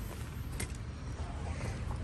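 Low steady outdoor rumble with a single light click about half a second in.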